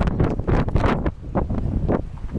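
Strong wind buffeting the microphone in gusts, a loud, uneven low rumble.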